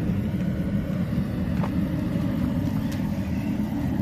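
Steady low mechanical rumble of a running machine, even and unbroken, with a couple of faint clicks.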